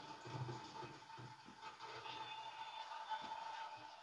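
Faint sound of a television broadcast playing in a room: a low haze of noise with a steady high-pitched tone running through it.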